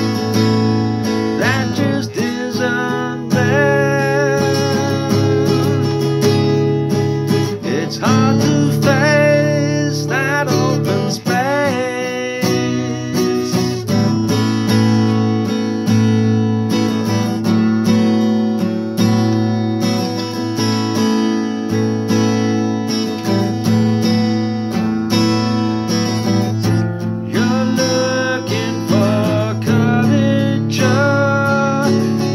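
Acoustic guitar strummed in steady chords, with a man singing over it for the first ten seconds or so and again near the end; in between the guitar plays on alone.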